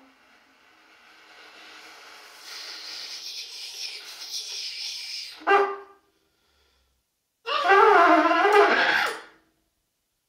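Solo trumpet in free improvisation: a soft, breathy airy tone swells slowly for about five seconds, then a short loud blast. After a pause of over a second comes a loud wavering note, bending in pitch for nearly two seconds before it stops.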